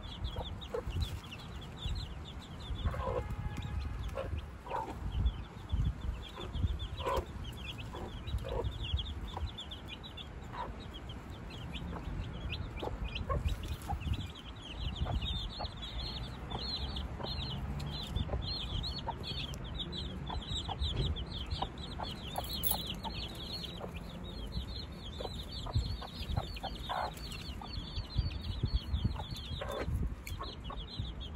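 A brood of young chicks peeping steadily, a stream of short high peeps that grows busier in the second half, with the mother hen clucking a few times among them.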